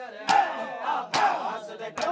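Crowd of men doing matam, beating their chests in unison: three sharp slaps a little under a second apart, with men's voices calling out between the strikes.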